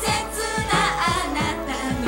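Japanese idol pop song performed live: female voices singing over a band track with a fast, steady drum beat.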